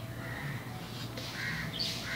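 Two short, harsh bird calls in the background, one near the start and one near the end, over a low steady outdoor hum.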